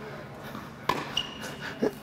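A single sharp tennis-ball impact about a second in, followed by a long, steady high-pitched squeak of a tennis shoe on the indoor hard court as a player moves for the ball.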